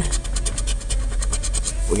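Scratch-off lottery ticket being scratched with a handheld scratcher in quick, even back-and-forth strokes, rubbing off the coating over a play spot.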